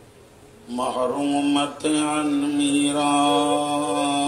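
A man's voice comes in about a second in and holds a long, steady chanted note in a religious recitation, with a short break near the middle.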